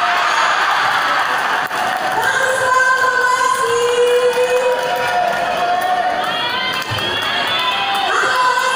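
Spectator crowd cheering and shouting in a large hall, with several long drawn-out shouted calls over the noise and one sharp tap about two seconds in.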